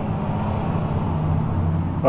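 A steady, low mechanical drone, like a motor or engine running continuously, with a faint hiss above it.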